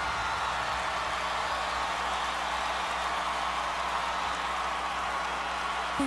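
Large stadium crowd cheering and screaming as one steady, even wash of sound, with no music playing.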